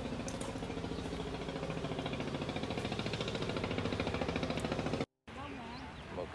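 An engine running steadily with a fast, even pulsing beat. It cuts off suddenly about five seconds in.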